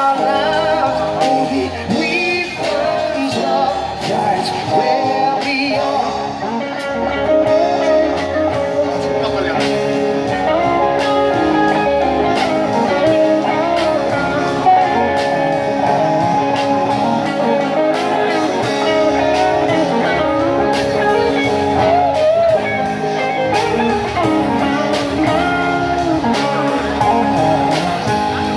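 Live band playing amplified electric guitars over a drum kit with cymbals, in a stretch without vocals.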